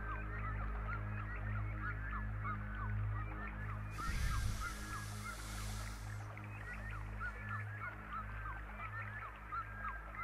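A flock of geese honking, many short calls overlapping throughout, over the sustained low chord of a fading keyboard outro. About four seconds in, a burst of hiss lasts about two seconds.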